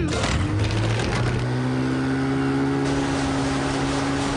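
Motorboat engine revving up as the throttle lever is pushed forward, then running at a steady pitch as the boat gets under way.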